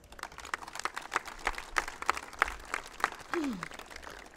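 Audience applauding, many hands clapping unevenly, with a brief voice heard about three and a half seconds in.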